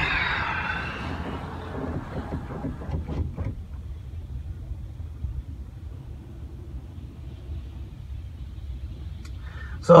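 A truck's power window motor whining, fading out about a second and a half in. Then a steady low rumble heard inside the cab, with a few knocks around two to three seconds in.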